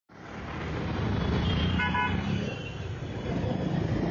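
City street traffic noise, a steady low rumble, fading in from silence at the start. A brief car horn toot sounds about two seconds in.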